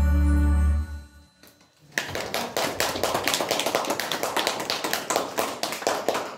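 Music ending on a long held chord that dies away about a second in, followed by an audience clapping for about four seconds.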